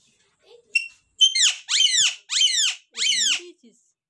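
A parakeet gives a short high call, then four loud, harsh calls in quick succession, each sweeping sharply down in pitch.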